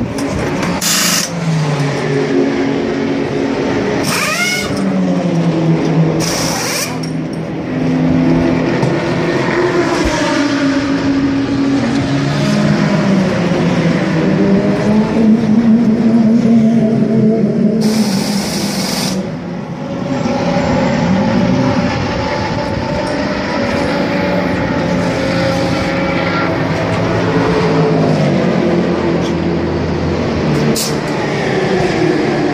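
GT race-car engines running in the pit lane, their pitch rising and falling, with short bursts of pneumatic wheel guns in the first seven seconds of the tyre change and a long hiss of air about eighteen seconds in.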